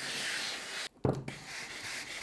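Steam-generator iron hissing as it presses a fabric seam over a wooden tailor's pressing block; the hiss cuts off abruptly just before a second in, a short knock follows, and the hissing starts again.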